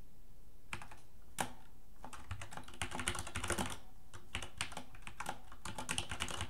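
Computer keyboard being typed on in short bursts of key clicks, after a brief pause at the start.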